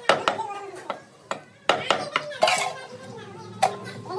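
Meat cleaver chopping goat meat on a wooden log chopping block: several sharp, irregularly spaced chops, a few in the first two seconds and another near the end.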